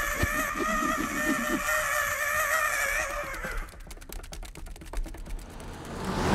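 An animated penguin character's long, wavering scream, held until about three and a half seconds in, then a fast patter of sharp clicks.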